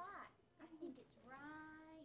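Quiet voices, ending in one long drawn-out vowel from a high voice.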